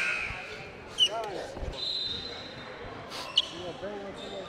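A basketball bouncing on a gym's hardwood floor, one low thump a little under two seconds in, among short bits of distant voices.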